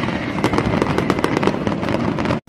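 Fireworks crackling: a rapid, irregular run of many small sharp pops, like a string of firecrackers going off.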